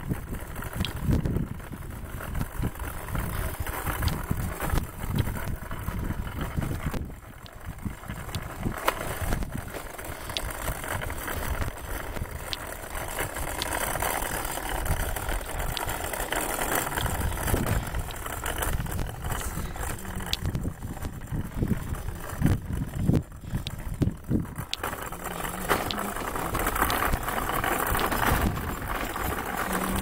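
Wind buffeting the microphone, a rough, gusting rumble that rises and falls.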